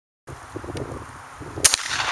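A single shot from a Savage 745 semi-automatic shotgun firing a one-ounce Fiocchi Exacta Aero slug: after a moment of silence, outdoor background noise comes in, and one sharp, loud report cracks about a second and a half in.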